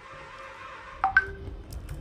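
Electronic tones: a steady tone for about the first second, then a click and a couple of short beeps at different pitches.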